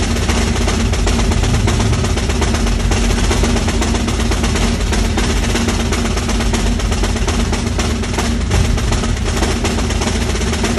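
A snare drum played with wooden sticks in a loud, unbroken stream of very rapid strokes, close to a continuous roll, with no pause anywhere in the passage.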